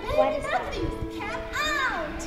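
A child's voice speaking over background music with long held notes; near the end a high voice sweeps up and back down in pitch.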